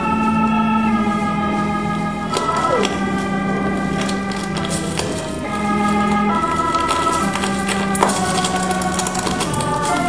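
Organ music playing slow, held chords, with small crunches and sharp cracks of broken bottle glass shifting under bare feet, the sharpest about eight seconds in.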